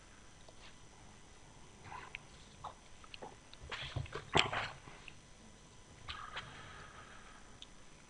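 Faint rustling of papers and small clicks and knocks at a desk microphone, with the loudest rustle about four and a half seconds in.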